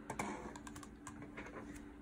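Faint, irregular clicking at a laptop, a dozen or so light clicks over a low steady hum.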